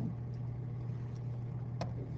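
Steady low hum and hiss of background noise on a computer microphone, with a single short mouse click near the end.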